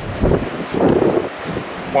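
Wind buffeting the microphone, with a short vocal sound about a second in.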